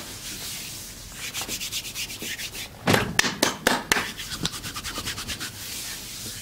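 Hands rubbing briskly over a bare leg in a fast, even rhythm of about six strokes a second, growing louder and sharper for about a second in the middle before easing off.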